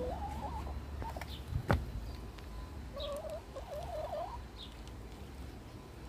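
Two wavering animal calls, each a little over a second long, one at the start and one about three seconds in, with a single sharp knock between them.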